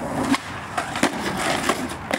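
Skateboard clacking on concrete and asphalt: a sharp knock about a third of a second in and another about a second in, with lighter knocks between, over the steady noise of urethane wheels rolling.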